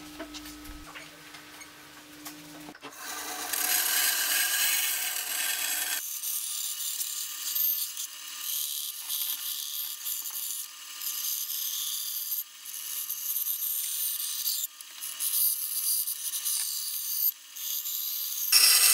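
Band saw cutting a pallet-wood board along marked lines, a steady hissing cut broken by several short pauses between passes. Before the sawing starts, about three seconds in, there are only faint small sounds of pencil-and-ruler marking on the board.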